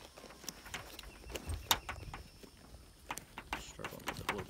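Nylon backpack being handled: scattered light clicks and rustling as its zipper pulls and panel are worked.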